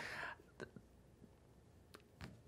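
A brief breath at the very start, then near silence with a couple of faint clicks.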